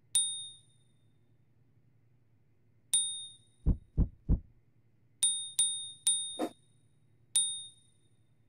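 A series of sharp bell dings, six in all, each ringing briefly and fading. About halfway through come three low thuds in quick succession, and a short lower sound falls among the later dings.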